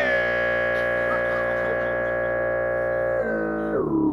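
Amplified guitar holding one chord steady for about three seconds, then sliding down in pitch near the end.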